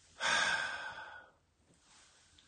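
A man's breathy sigh, about a second long, fading out.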